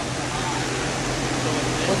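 Steady running noise of a 1970 Mustang Boss 302's V8 engine at idle, with hydrogen from an HHO generator being fed into its carburetor, heard as an even hiss with a low hum beneath.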